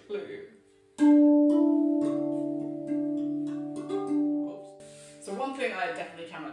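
RAV steel tongue drum struck by hand: five notes of a slow melody, each left to ring and overlapping the next, the first the loudest, all fading away over about four seconds.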